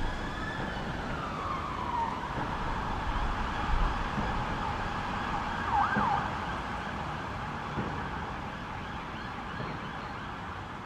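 An emergency vehicle siren wailing, one long falling sweep in the first two seconds and a quick warble about six seconds in, over a steady hiss. The sound slowly fades.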